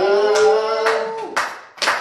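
Hand clapping in time, about two claps a second, while a voice holds one long sung note that ends a little over a second in.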